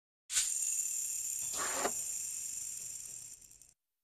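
Title-animation sound effect: a high hiss with a ringing high tone that starts a moment in. A swish comes about a second and a half in, and the sound fades out just before the end.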